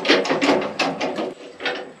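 Irregular clattering knocks of wood being handled on a portable sawmill, about half a dozen sharp strikes in two seconds.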